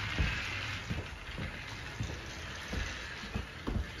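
Battery-powered motorized toy train engine whirring steadily. Several irregular soft low knocks come from the toy being handled.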